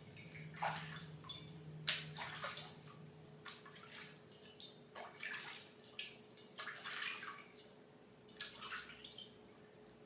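Hands scooping water from a ceramic basin and splashing it onto the face to rinse it, in a dozen or so irregular faint splashes with water dripping back into the bowl.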